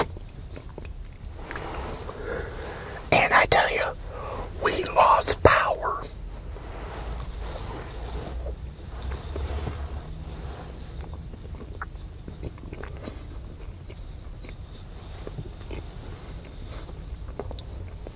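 Biting and chewing food close to the microphone, with two louder spells of bites about three and five seconds in, then quieter chewing over a low steady hum.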